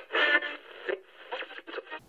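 A thin, tinny voice filtered to sound like an old radio broadcast, with choppy speech-like phrases.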